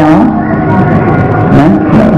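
A man's voice preaching in Khmer into a microphone, drawing one syllable out into a held, sung note about a third of a second in, then speaking on.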